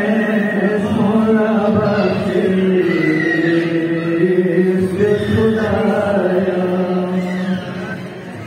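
A voice chanting a Balti qasida, a devotional poem, in long drawn-out melodic lines that bend slowly in pitch. It falls away near the end.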